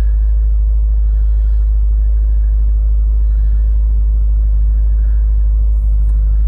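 2022 Subaru WRX's turbocharged 2.4-litre flat-four idling steadily at about 1,500 rpm, a raised warm-up idle, heard as a low rumble inside the cabin.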